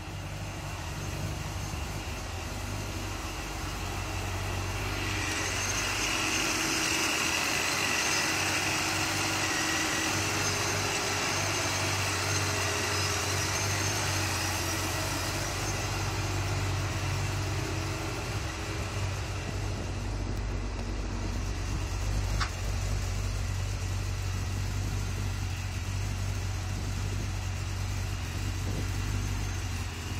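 Idling V8 of a 2009 Pontiac G8 GT with a ProCharger D1 supercharger and a custom-ground cam, running at a steady idle. It grows louder over the first five seconds or so.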